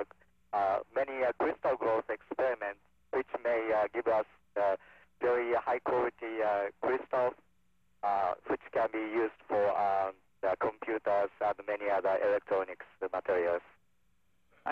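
A man speaking into a handheld microphone over a narrow-band radio downlink, in short phrases with brief pauses, a faint steady hum showing in the gaps.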